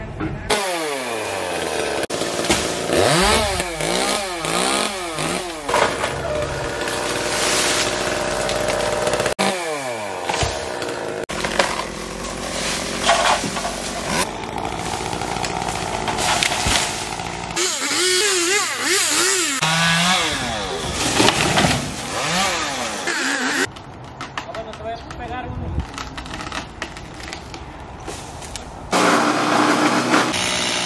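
Chainsaw revving up and down while cutting up a large tree, with engine noise underneath. The sound changes abruptly several times.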